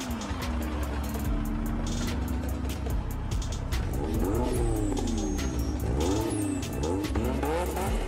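Sports car engine revving hard: a steadier drone at first, then from about halfway through its pitch climbs and drops again and again, about once a second, as it accelerates and shifts. Music plays underneath.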